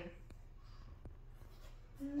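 Quiet room tone with a faint low hum and two faint clicks about three-quarters of a second apart.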